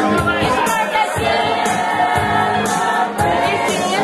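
A man singing live into a handheld microphone over a backing track with a steady beat, with long held and sliding notes.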